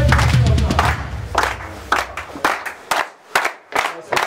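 Music with a deep low boom through the first couple of seconds, then a group clapping hands in a steady rhythm, roughly two to three claps a second.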